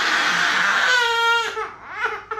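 Baby crying hard while getting an injection: one long wail, rough and strained at first, turning into a clear high-pitched cry before it trails off a little past halfway through.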